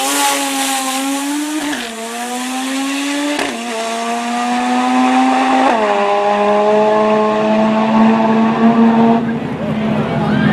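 Turbocharged 13B rotary engine of a drag-racing VW Beetle at full throttle down the strip, its note climbing through the gears with three upshifts, the pitch dropping sharply at each, about two seconds apart. After the last shift it holds a steady high note and fades near the end.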